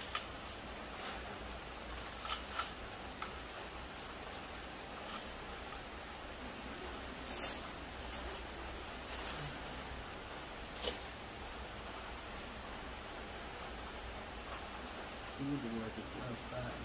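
Coins clicking against each other as they are stacked by hand on a table: a few sharp, separate clinks scattered through, the loudest about seven seconds in. A steady low background hiss runs under them.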